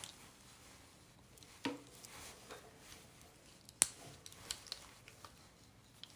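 Faint handling sounds of a curling iron being worked into a section of hair: soft rustles and a few small clicks, with one sharp click a little under four seconds in.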